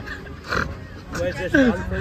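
A person's voice making wordless vocal sounds: a breathy burst about half a second in, then short falling grunt-like sounds in the second half.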